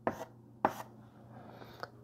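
Chalk tapping and scratching on a blackboard while writing: a few short, sharp taps, the sharpest just over half a second in, with faint scraping between them.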